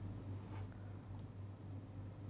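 Two faint clicks of keys being typed on a computer keyboard, about half a second and a little over a second in, over a steady low hum.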